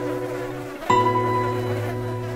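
Cartoon sound effect of flies buzzing, over sustained music notes; a new set of tones comes in about a second in.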